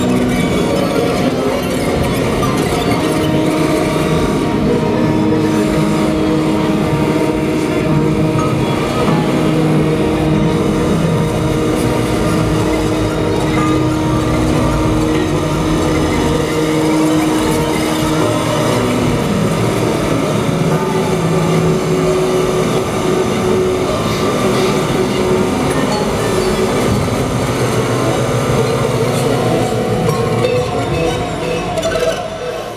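Live electronic noise music played through a club PA: a dense, unbroken wash of noise under droning held tones, with one long steady tone through the first half giving way to other held pitches later.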